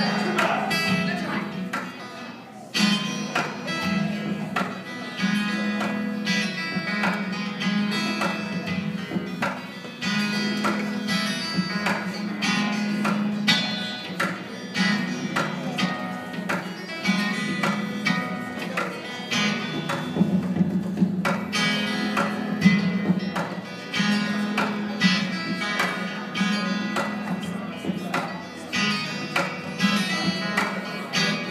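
Live solo guitar playing, a busy run of sharp rhythmic strokes over a steady low bass line, heard from the back of a room through a phone microphone.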